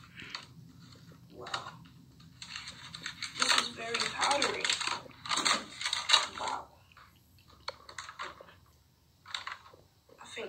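Cardboard cornflour box and its inner paper bag being pulled open and handled, with irregular crinkling and rustling.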